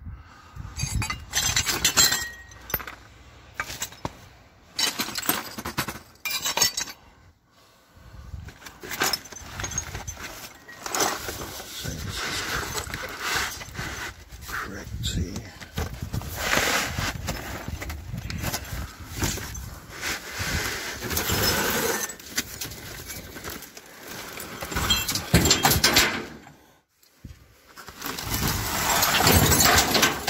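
Shards of broken ceramic crockery and glass clinking, scraping and clattering as they are moved about by hand in a dumpster, in irregular bursts with short pauses; plastic trash bags rustle near the end.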